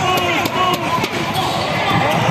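A basketball being dribbled on a hardwood court, bouncing about three times a second, with voices calling out over it.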